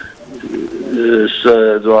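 A man's voice over a telephone line, thin and cut off in the highs, speaking a short phrase in the second half.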